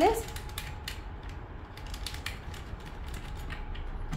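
Faint, scattered clicks and light taps of hands handling the plastic casing and handpiece fittings of a multifunction facial machine.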